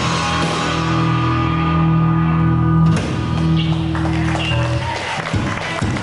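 Live rock band's amplified electric guitars and bass holding sustained, droning notes, with a fresh strike about three seconds in and the notes shifting after it: the band tuning up before a song.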